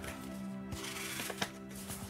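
Soft background music of sustained tones, with paper rustling and crinkling as a letter is opened and unfolded.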